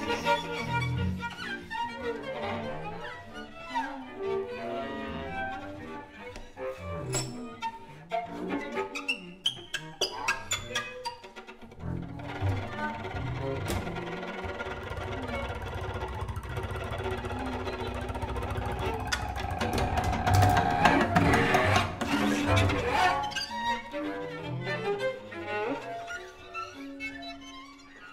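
Free-improvised music for bowed strings: violin, violas, cello and double bass. Scattered short bowed notes and clicks in the first half give way to a dense sustained texture over a low drone, which swells to its loudest about three quarters in and then thins out near the end.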